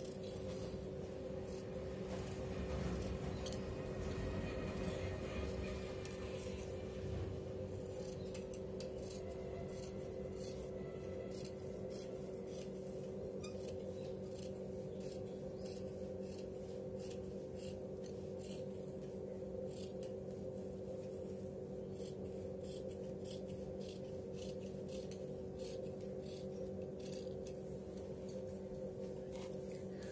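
Large tailor's scissors cutting through blouse fabric: a scattered run of short crisp snips, denser in the second half, over a steady low hum.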